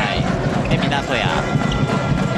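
A basketball being dribbled on a hardwood court over steady arena crowd noise, with a commentator's voice briefly over it.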